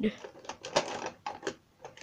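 Plastic Copic marker barrels clicking and clattering against one another in irregular little knocks as they are sorted through to pick a colour.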